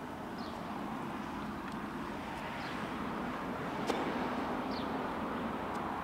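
A vehicle going by on a nearby road, its steady rumble swelling and then easing off. One sharp click about four seconds in.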